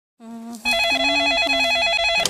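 Telephone ringing with an electronic ringer: a rapid, regular warbling trill, about ten alternations a second, that sets in just over half a second in, after a brief lower tone.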